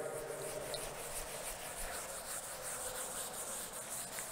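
A chalkboard duster wiping chalk writing off a chalkboard: a steady run of back-and-forth rubbing strokes.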